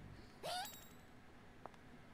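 A short voice sound rising in pitch about half a second in, then a faint click, over low room tone.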